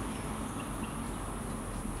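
Quiet outdoor background: a steady high-pitched insect drone over a faint low rumble.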